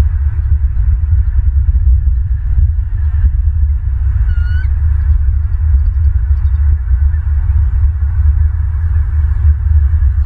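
Wind buffeting an outdoor microphone as a loud, uneven low rumble throughout. A single short bird call comes about four and a half seconds in.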